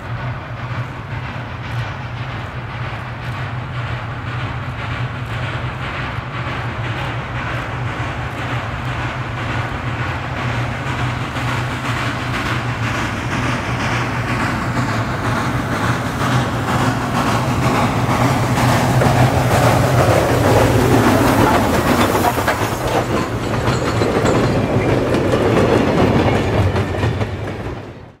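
Western Maryland Scenic Railroad 1309, an ex-Chesapeake & Ohio 2-6-6-2 articulated steam locomotive, working hard with a rapid, steady beat of exhaust chuffs that grows louder as it approaches and is loudest as it passes. Near the end the train's cars roll past with a clickety-clack of wheels on rail joints.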